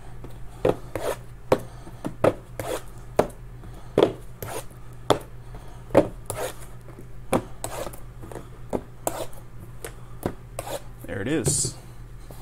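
Shrink-wrapped cardboard trading-card boxes being handled on a table: a string of irregular sharp taps and knocks as boxes are set down and shifted, with rubbing and scraping between them.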